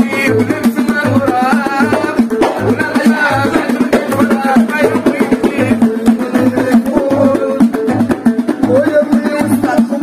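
Moroccan Abda folk music: a watra, a long-necked wooden lute, is plucked while hand frame drums with metal jingles beat a steady rhythm and men sing.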